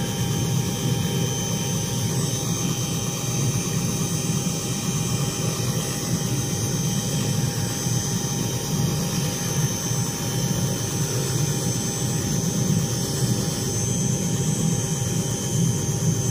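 A light helicopter running on the ground: a steady engine and rotor noise with a constant high whine, unchanging throughout.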